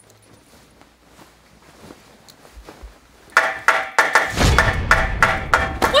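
Quiet room tone, then, about three seconds in, rapid hammering starts: a hammer striking a wooden bed frame about four times a second, over a steady tone.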